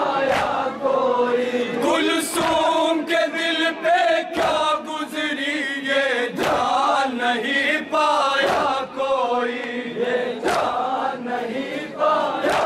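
Male voices chanting an Urdu noha (Shia mourning lament) in a steady melodic line, with sharp matam strokes of hands beating chests about every two seconds keeping the rhythm.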